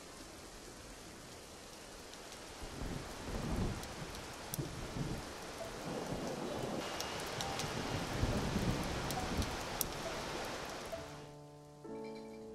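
Heavy rain falling steadily, with scattered sharp drop ticks and low rumbles of thunder twice, about three seconds in and again around eight seconds. The rain grows brighter and louder a little past halfway.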